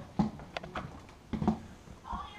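A few short clicks and knocks as multimeter test probes and leads are handled and pushed into a wall outlet: two louder knocks about a second apart, with lighter clicks between them.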